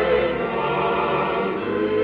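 Choir and orchestra performing an operetta number, voices holding sustained chords, heard through an early-1950s radio broadcast recording with a dull, narrow top end.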